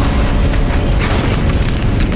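Loud, continuous deep rumbling with booms, a film's disaster-scene sound mix, with music underneath.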